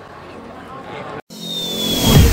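Interview speech breaks off at a hard cut about a second in, and a logo-animation sound effect starts: a swell of noise with a thin high tone, growing louder as it leads into music.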